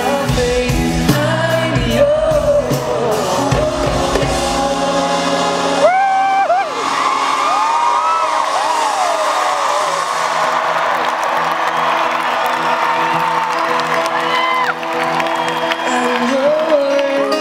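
Live band playing with a lead singer, heard from within the audience. About six seconds in the bass and drums largely drop away, leaving sung lines over the crowd's cheering and voices.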